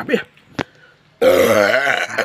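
A man's loud, drawn-out burp starting a little over a second in and lasting nearly a second, with a wavering low pitch. A short click comes just before it.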